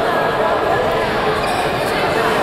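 Sports-hall ambience: overlapping background voices echoing in a large hall, with a couple of brief sharp sounds near the end.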